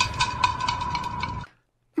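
Edited-in meme sound effect for a dramatic zoom: a loud burst of noise with a steady, thin beep-like tone running through it, cutting off suddenly about one and a half seconds in.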